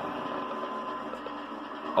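A steady mechanical hum with a faint constant high tone, unchanging throughout.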